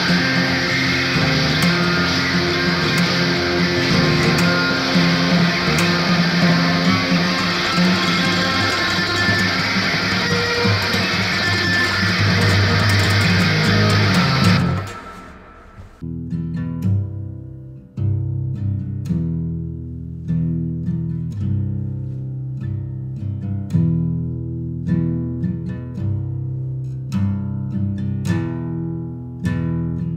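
Guitar cover music: loud strummed electric guitar with bass fills the first half, then cuts off abruptly about halfway through. After a second's pause a clean guitar plays slow single picked notes that ring and fade.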